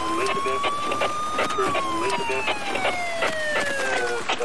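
Police car siren on a slow wail, its pitch climbing until about a second and a half in and then falling slowly, heard from inside the patrol car during a pursuit over engine and road noise.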